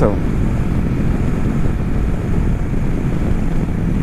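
Wind rushing over the microphone with the steady drone of a Kawasaki Versys 650's parallel-twin engine and road noise, cruising at highway speed around 109 km/h.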